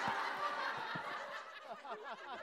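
Studio audience laughing, the laughter dying away. Near the end a run of quick chirps begins.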